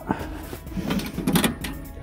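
Pellet stove's hopper lid being opened and handled, with a cluster of clicks and rattles about a second in.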